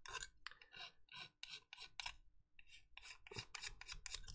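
Faint, quick back-and-forth strokes of a flat sanding stick on a grey plastic model-kit part, about three to four strokes a second.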